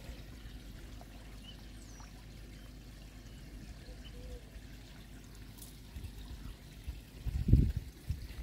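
Koi pond water trickling faintly and steadily. A brief low thump comes near the end.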